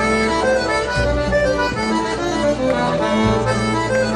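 Celtic folk dance tune played live: a steady melody over bass notes that change every second or two.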